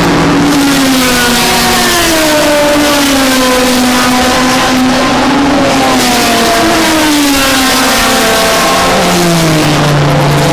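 Historic racing car engines at speed on the circuit, their notes rising and falling in pitch through the gears as cars pass. A further car's lower engine note comes in near the end. The sound is loud and harsh, as heard through a small built-in camera microphone.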